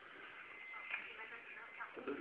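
Faint, indistinct speech: a low voice murmuring.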